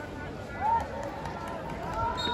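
Footballers shouting calls to one another on the pitch, with one loud call about half a second in.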